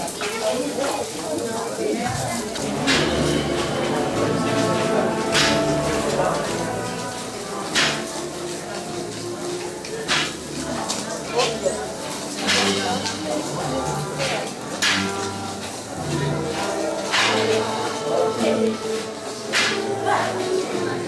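Band music for a procession: held wind-instrument notes with a loud percussion strike every two to three seconds, setting in about three seconds in over voices in the crowd.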